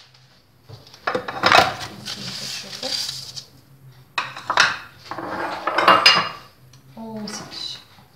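Metal baking tray being set down and shifted on a stone countertop, with kitchen dishes knocking: several separate clanks and scrapes about a second apart.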